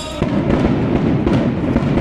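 A string of firecrackers going off in a rapid, continuous crackle, loud and dense, starting about a quarter second in.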